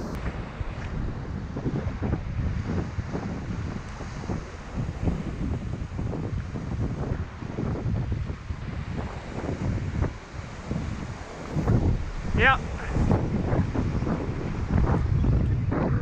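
Wind buffeting the microphone in uneven gusts over surf washing against a rock ledge.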